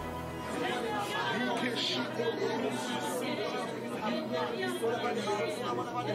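Indistinct chatter of many people talking at once, with soft music running underneath.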